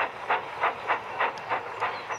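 Steam locomotive chuffing sound effect: a steady run of puffs at about three a second, as a small steam engine sets off.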